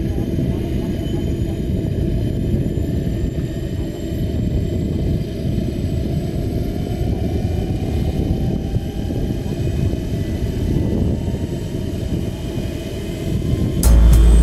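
Radio-controlled scale model of a Bell 412 helicopter running on the ground with its main and tail rotors turning: a steady low rotor and engine noise with faint high whines, one of them rising slowly in pitch around the middle. Music comes in right at the very end.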